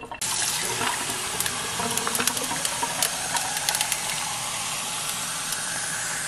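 Kitchen faucet running, its stream pouring into a metal-lined insulated tumbler and filling it. The steady flow starts just after the beginning.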